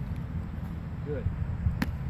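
A thrown football smacks once into a catcher's hands near the end, with a low wind rumble on the microphone throughout.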